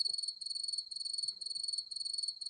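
Cricket chirping, a high-pitched trill broken into short chirp groups that starts suddenly at a cut: the stock 'crickets' sound effect marking an awkward silence.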